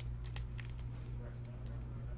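Trading cards being handled: a scatter of short, light scrapes and clicks as cards slide against each other, over a steady low electrical hum.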